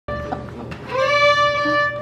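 A fiddle plays one long bowed note, sliding up into its pitch about a second in and holding it steady.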